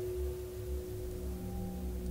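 A steady sustained tone with faint overtones, over a low rumble, like an eerie drone; a second, lower tone joins about halfway through.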